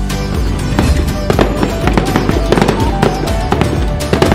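Background music with firework crackles and pops laid over it, the crackling growing dense about a second in.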